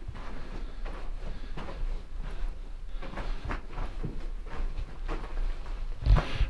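Footsteps crunching on a loose rock and gravel floor, an uneven step about every half second, over a steady low rumble.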